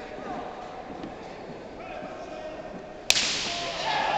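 Faint voices in a large hall, then a single sharp, slap-like crack about three seconds in, after which the sound turns louder and noisier with crowd voices.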